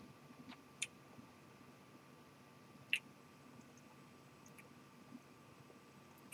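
Quiet room tone while whisky is held in the mouth and tasted, broken by two faint short mouth clicks, about a second in and again near three seconds.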